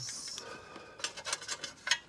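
Hands fumbling a small screw into an automatic gearbox filter from underneath the car: a brief scrape of rubbing, then a few light metallic clicks as it is worked into place.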